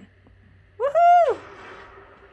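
A single high-pitched 'ooh' from a person's voice, about half a second long, rising and then falling in pitch.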